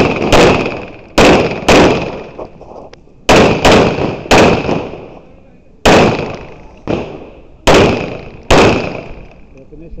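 Semi-automatic pistol shots fired mostly in quick pairs, about ten in all over a practical-shooting course of fire. Each sharp crack trails off in a short echo.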